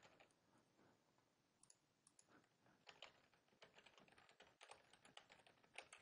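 Faint typing on a computer keyboard: scattered key clicks, thickening into short runs from about a third of the way in.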